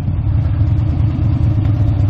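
Harley-Davidson 883 Sportster's air-cooled V-twin engine running steadily at low revs as the bike creeps up behind stopped traffic, heard from the rider's position.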